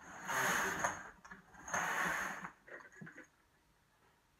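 Knitting machine carriage pushed across the needle bed twice, each pass a rushing whir of about a second, knitting the two rows that follow a twist. A few faint clicks follow.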